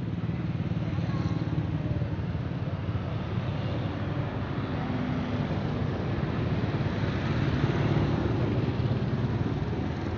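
Street traffic: motorcycles and cars passing one after another, a continuous mix of engine and tyre noise.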